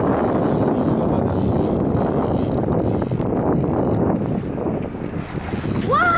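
Steady wind noise on the microphone over the wash of the sea around a boat.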